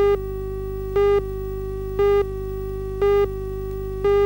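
Countdown leader tone on a videotape: a steady pitched tone with a louder beep of the same pitch once a second, four times, over a low hum.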